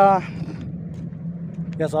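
A steady low hum runs under a man's voice, which is heard briefly at the start and again near the end.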